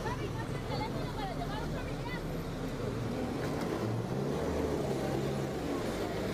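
Road traffic with a vehicle engine running steadily, and people's voices talking in the background during the first couple of seconds.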